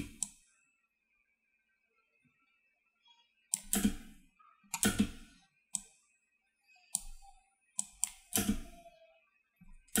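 Scattered clicks of a computer mouse and keyboard during editing: one at the start, then after a pause of about three seconds a run of eight more, irregularly spaced.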